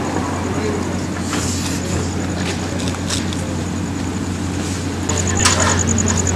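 A steady low motor hum with faint voices talking in the background and a few brief clicks. A rapid, evenly pulsing high-pitched tone comes in near the end.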